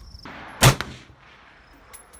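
A single gunshot about two-thirds of a second in, followed by a short echo dying away.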